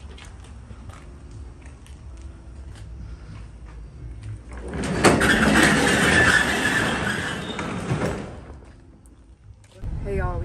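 The roll-up rear cargo door of a U-Haul box truck being pulled down. About halfway through there is a loud rolling, rattling noise that lasts about three seconds and ends in a knock as the door shuts.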